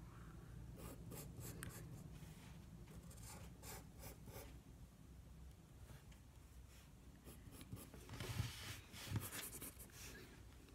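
Pencil scratching on paper in quick sketching strokes, coming in short clusters, with the loudest strokes near the end.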